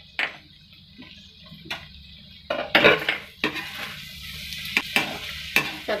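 A steel spatula stirs guar beans and potatoes in a kadhai, clinking and scraping on the pan, with a few sharp clinks in the first two seconds. From about two and a half seconds in, the stirring gets louder over a steady sizzle of the vegetables frying.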